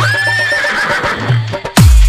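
A horse-whinny sound effect dropped into a break of a DJ remix. The heavy kick-drum beat stops, the neigh rises sharply and quavers for about a second over a low bass note, and the kick beat comes back near the end.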